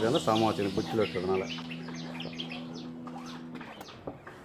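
A man's voice speaking for about the first second and a half, then a low steady hum for about two seconds. Small birds chirp in the background throughout.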